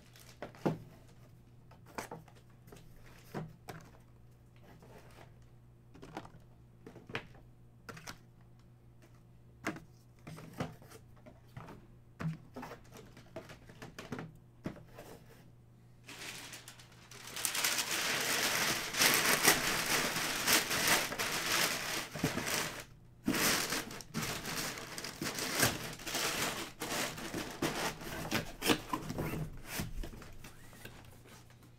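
Packaging being handled: at first, scattered light taps and plastic crinkles. From about halfway there is a long, loud stretch of crinkling and rustling of plastic and cardboard, broken by a short pause about two-thirds of the way through.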